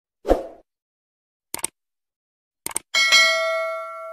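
Subscribe-button animation sound effects: a soft pop, then two quick double clicks like a mouse button, then a bright notification-bell ding that rings on and fades out.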